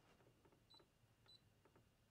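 Two faint, short, high beeps about half a second apart from a Brother ScanNCut DX SDX330D cutting machine's touchscreen as a stylus taps its scroll arrow buttons; otherwise near silence.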